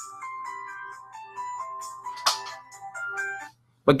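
A phone ringing with a melodic electronic ringtone of stepped notes. It stops about three and a half seconds in, unanswered.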